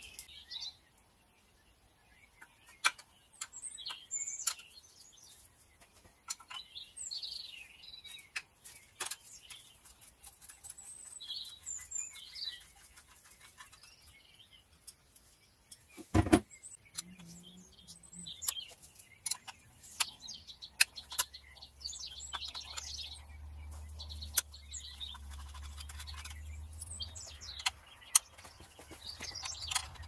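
Quiet workshop sounds: occasional sharp clicks and knocks of metal tools on the engine's fuel-line fittings over faint bird chirps. The loudest is a single knock about halfway through, and a low hum comes in for the last ten seconds or so.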